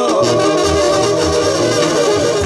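Live Mexican banda playing an instrumental passage: the brass section holds melody lines over separate tuba bass notes, with no singing.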